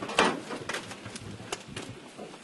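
Footsteps crunching over broken brick and concrete rubble: a handful of separate short crunches, the loudest about a fifth of a second in.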